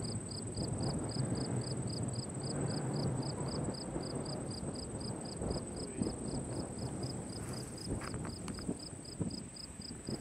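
Meadow insects chirping in an even rhythm, about four chirps a second, over a steady high buzz. Rumbling wind noise sits underneath, with a few scattered knocks near the end.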